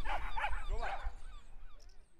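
A few short yelping animal calls, faint and fading out with the rest of the sound.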